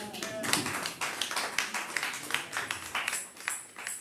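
Congregation clapping, a dense run of sharp claps. About three seconds in, tambourine jingles join in with the clapping.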